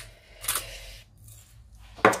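Hands handling a raw leg of lamb on a plastic cutting board: one short, sharp rub or click about half a second in, then quiet room tone.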